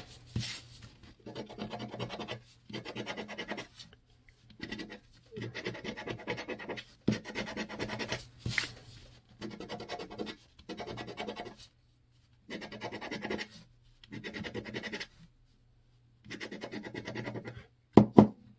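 A lottery scratch-off ticket being scratched with a coin-like disc, its coating scraped off in a run of short bursts of rapid rubbing with brief pauses between them, and two longer pauses in the second half.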